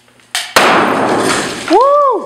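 An airsoft Thunder B grenade with a homemade hot-glue and water-bottle shell going off about half a second in: a sharp, very loud bang, then a hissing rush with BBs scattering that fades over about a second. The shell bursts as intended. Near the end a man gives a rising-then-falling exclamation.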